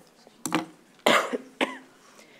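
A woman coughing into her elbow: three coughs about half a second apart, the middle one the loudest.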